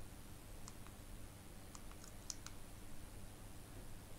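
Faint room tone with a steady low hum, broken by a few small, faint clicks in the middle stretch.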